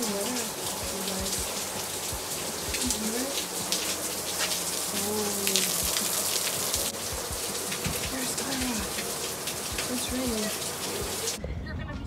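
Steady rain falling on a driveway and lawn, with many single drops ticking on the concrete. It cuts off suddenly near the end.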